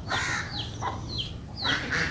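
Poultry-yard birds calling: a harsh call at the start, then repeated high, falling peeps, about two a second, typical of young chicks.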